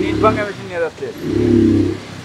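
Street noise: people's voices and a motor vehicle engine running nearby, the engine louder in the second half.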